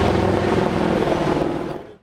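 Helicopter passing overhead: steady engine and rotor noise, fading out near the end.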